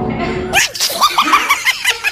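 A woman laughing: a drawn-out voiced sound, then a run of short, quick laughs.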